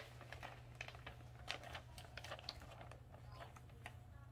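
Faint, scattered light clicks and ticks as a laminating pouch is fed by hand into a Scotch thermal laminator, over a low steady hum.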